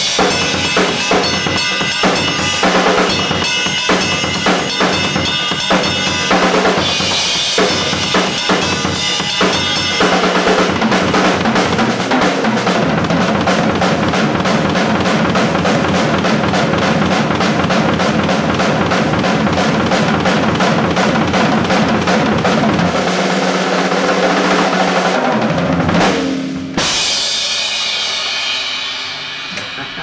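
Drum solo on a Pearl drum kit with Zildjian cymbals: fast bass drum, snare and tom strokes, building into a dense, continuous stretch of rapid playing. Near the end it closes on one last loud hit with the cymbals left ringing out and fading.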